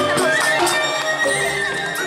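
Balinese gamelan music: bamboo suling flutes play wavering, gliding lines over the sustained ring of bronze metallophones. A quick run of sharp metallic strokes stops about half a second in.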